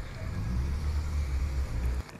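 A deep, low rumble that swells over the first half second, holds, and then cuts off abruptly.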